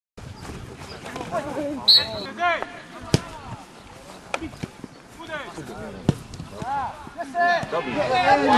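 Footballers shouting to one another on an outdoor pitch, with a few sharp thuds of the ball being kicked.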